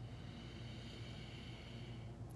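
Faint, steady inhale through one nostril, the other held closed by a finger, in alternate-nostril breathing, fading near the end, over a low steady hum.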